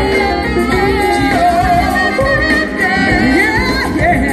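Live band music: a woman and a man singing a duet into handheld microphones over keyboards, bass guitar and drums.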